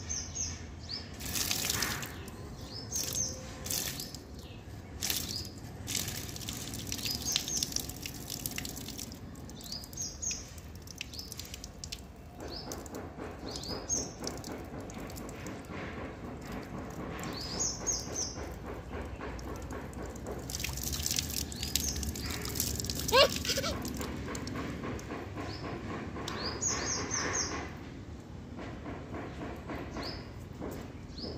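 Water from an outdoor tap trickling and splashing in short spells as a small child plays with it, while a bird chirps in short clusters every few seconds. About two-thirds of the way through comes a short rising squeal, the loudest sound.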